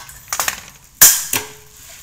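Chrome magnetic door stopper being handled: a few light metal clicks, then one sharp metallic clack about a second in that fades quickly.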